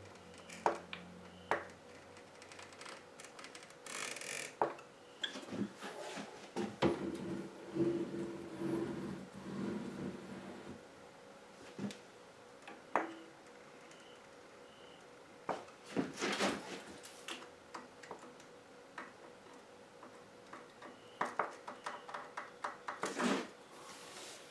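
Intermittent clicks, taps and light metal clinks from hands and small tools working on a mini milling machine during assembly. There are a couple of longer scraping rustles, and a quick run of clicks near the end.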